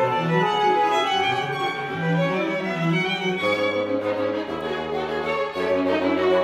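Live chamber orchestra music: a bassoon soloist with a string section of violins, violas, cellos and double bass, plus flutes, oboes and horns, playing busy repeating figures. The bass line steps lower in the second half and rises again near the end.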